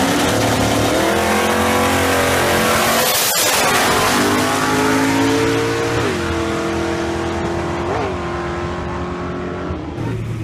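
Two no-prep drag race cars launching off the line at full throttle and running hard down the strip. The engine note comes in suddenly and loud, climbs, and drops in pitch twice, around six and eight seconds in, easing off somewhat toward the end.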